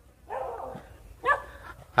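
A dog barking twice, the barks about a second apart.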